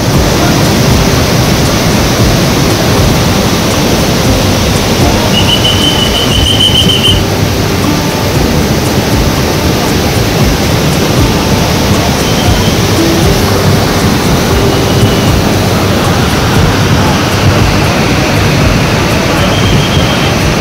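The Ganga in full flood, a muddy torrent surging through Gangotri, gives a loud, steady roar of rushing water.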